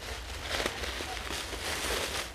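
Soft rustling and handling noise, with a few brief louder scuffs about half a second in and near the end.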